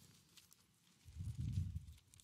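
Muffled low thudding about a second in, under a second long, from a Bible being handled on a wooden pulpit close to the microphone while the passage is looked up.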